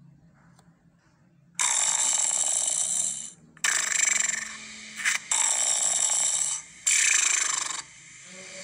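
An alarm-clock bell sound effect ringing in four long bursts, starting about a second and a half in, with short breaks between them.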